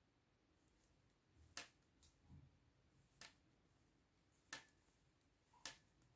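Near silence broken by four faint, sharp clicks of metal circular knitting needle tips meeting as stitches are knitted, spaced a second or so apart.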